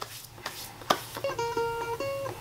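A few held guitar notes ring out as music, starting a little over a second in, with a short click just before them.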